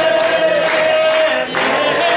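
A group of voices singing together, holding one long note before moving on, with hand clapping in time about twice a second.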